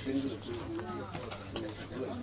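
People talking in the background, their words indistinct.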